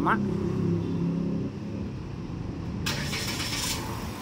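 Chery Tiggo 5X SUV's engine being remote-started from its key fob and running. There is a steady low hum through the first half and a burst of noise lasting about a second, about three seconds in.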